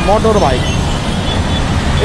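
Steady low rumble of heavy, congested city road traffic.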